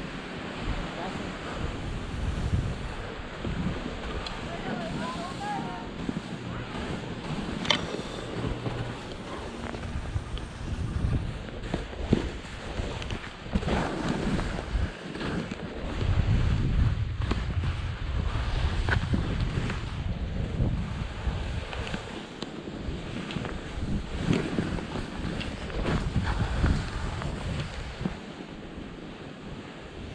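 Wind rushing over a GoPro's microphone during a downhill ski run, with the hiss and scrape of skis on snow. The rumble is heaviest in the middle of the run.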